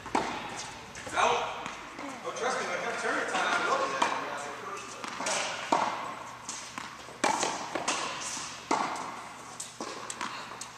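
Tennis balls struck by rackets and bouncing on the court during a rally: a string of sharp hits about a second or two apart, with people talking in the background.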